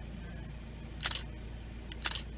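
A steady low hum with one short breathy hiss about a second in, in a gap in the narration.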